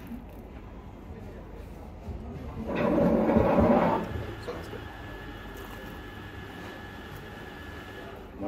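Café background noise, with one loud, dense sound lasting a little over a second about three seconds in. A faint steady high tone runs through the second half.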